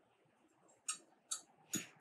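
Three short, light clinks of a metal spoon against a glass jug, starting about a second in, as the spoon is picked up to scoop out seed-and-compost mix.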